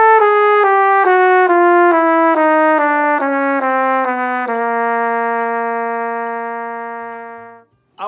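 Kanstul flugelhorn playing the descending half of a one-octave chromatic scale, slurred in even eighth notes at a steady pulse of a little over two notes a second. It lands on the low C about halfway through, holds it for about three seconds and fades out.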